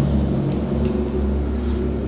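A steady deep rumble of room noise with no speech.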